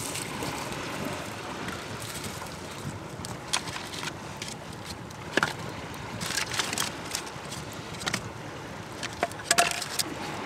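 Small wood fire of dry grass and twigs burning in a stone fireplace, crackling over a steady hiss, with sharp pops scattered through and the loudest few near the end.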